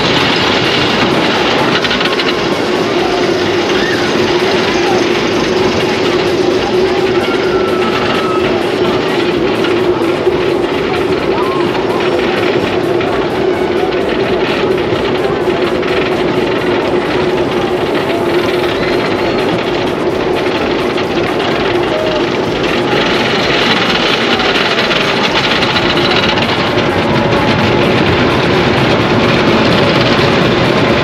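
GCI dueling wooden roller coaster train on its chain lift hill: a steady clatter with a low hum as it climbs. About two-thirds through, the hum fades and gives way to the louder rush and rumble of the train running down the wooden track.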